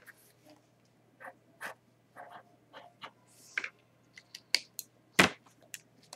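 Sharpie fine point felt-tip pen writing on paper: short, irregular, faint scratchy strokes. A single sharp click about five seconds in.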